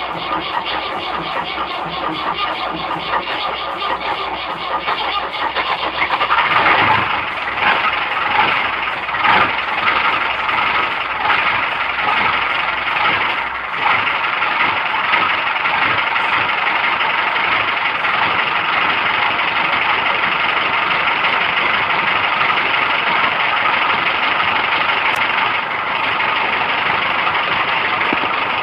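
Ford 6610 tractor's diesel engine, heard from inside the cab, on a hard start: it turns over with an even beat for about six seconds, then catches with a louder burst and runs on steadily.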